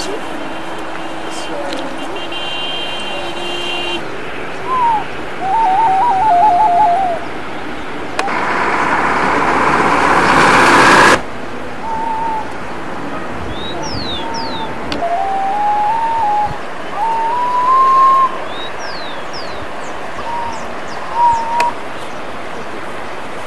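Outdoor ambience with a steady hiss and bird calls: runs of short whistled notes stepping up and down, and a few high, quickly falling chirps. A rush of noise builds for about three seconds in the middle and cuts off suddenly.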